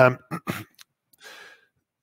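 A man's hesitant "um" and a couple of short murmured fragments, then a soft breath about a second in.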